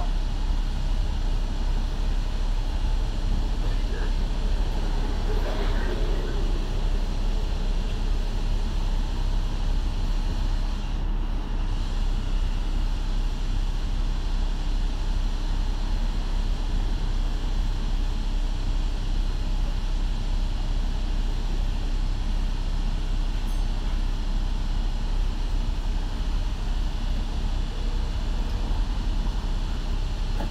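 Steady low rumble of a double-decker bus's diesel engine idling, heard from inside the cabin while the bus stands still in traffic. Faint voices come in briefly about five seconds in.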